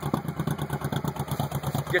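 Honda Shadow VT1100 V-twin engine idling low with a regular pulsing beat, the 'potato sound' of a V-twin whose idle speed has been turned down.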